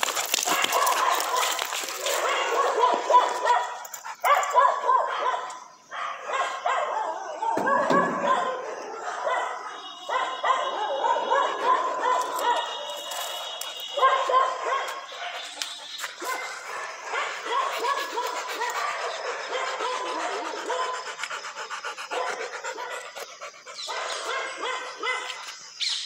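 A dog vocalising on and off close by, in repeated pitched calls.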